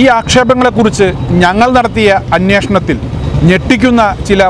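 Speech only: a man talking continuously in Malayalam.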